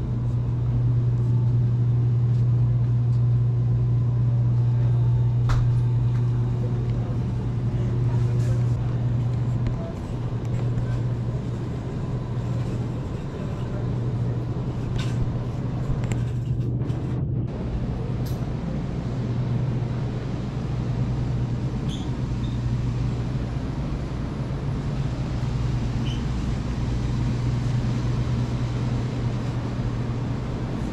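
Steady low hum of a grocery store's refrigerated display cases, a little quieter from about ten seconds in.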